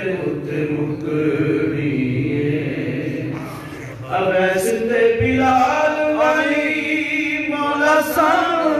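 A man reciting a naat in a slow, melodic chant into a microphone, holding long ornamented notes; his voice drops briefly just before the middle, then returns louder with a more elaborate melody.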